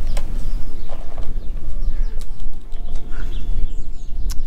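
Wind buffeting the microphone in a steady low rumble, with soft scrapes and rustles of gloved hands working the Velcro straps of a fabric frame bag.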